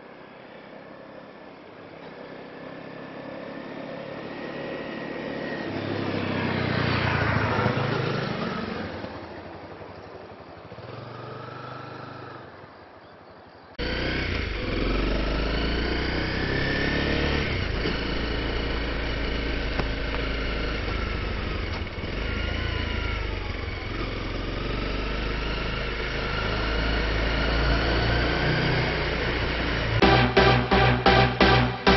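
Honda CRF250L's single-cylinder engine: the motorcycle approaches, is loudest as it passes about seven to eight seconds in, and fades away. After a sudden cut about fourteen seconds in, it is heard close up from on the bike, running steadily loud with its pitch rising and falling as the rider changes speed.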